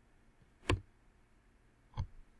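A single sharp click of a computer keyboard key being pressed, the Enter key opening a new line, just under a second in. A fainter click follows at the very end.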